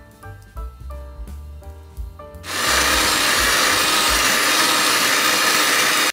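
Background music, then about two and a half seconds in an electric hand mixer starts and runs steadily, its beaters whirring through thick cake batter in a bowl, much louder than the music.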